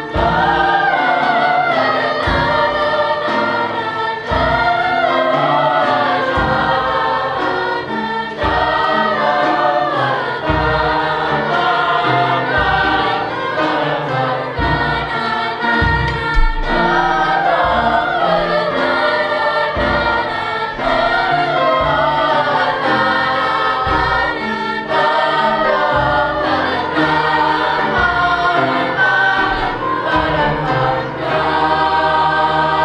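A large mixed choir of middle-school voices singing a song, phrase after phrase with only brief breaths between.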